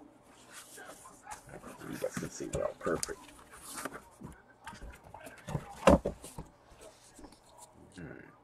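A large cardboard box being opened and handled: cardboard lid and inner sheets sliding, rubbing and rustling, with a sharp thump about six seconds in.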